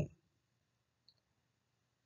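The end of a spoken word, then near silence: room tone with a faint low hum and a single tiny click about a second in.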